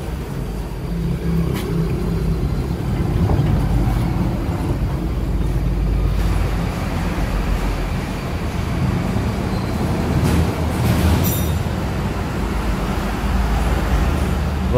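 Steady low rumble of an idling light truck engine.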